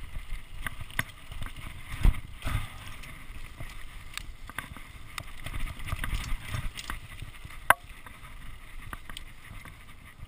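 Mountain bike descending a rough dirt downhill trail at speed: tyres rolling on dirt, the chain and bike rattling over bumps, and wind on the microphone. A heavy thump comes about two seconds in and a sharp clack a little before the end, the loudest moments among many small knocks.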